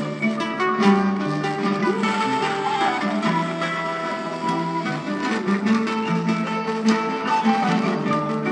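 Live traditional Senegalese ensemble music led by plucked string instruments, playing continuously over held low notes.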